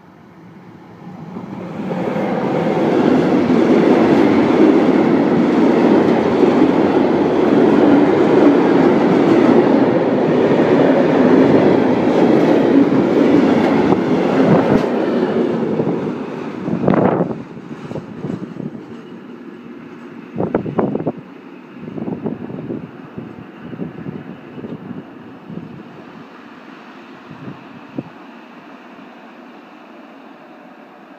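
HVLE class 285 diesel-electric locomotive and its tank-wagon freight train passing close by. The loud rumble of the engine and rolling wheels builds within about two seconds and holds for a dozen seconds as the wagons roll past, then drops off. A handful of sharp wheel clacks follow as the last wagons pass, and a fainter rumble fades as the train moves away.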